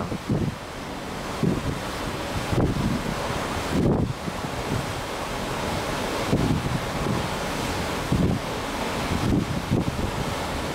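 Wind buffeting the microphone in soft gusts every second or two, over a steady rush of wind and sea.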